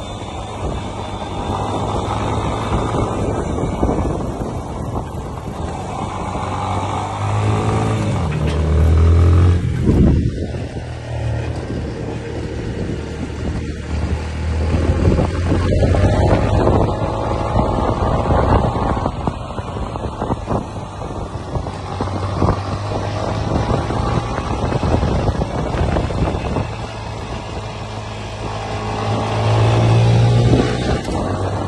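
Motorcycle engines revving up and easing off repeatedly, the pitch rising and falling as the riders accelerate and slow through tight turns between cones. Loudest about ten seconds in and again near the end, with wind buffeting the microphone.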